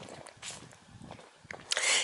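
Faint scuffing footsteps of a walker on a tarmac lane.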